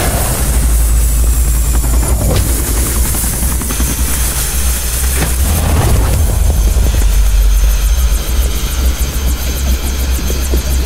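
A light helicopter descending to land: a loud, steady, deep rotor thrum that runs unbroken through the whole stretch.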